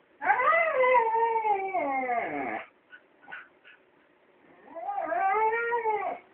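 A dog whining in two long, drawn-out cries: the first rises and then slides down in pitch over about two seconds, the second comes near the end and arches up and down. The dog is begging for a ball.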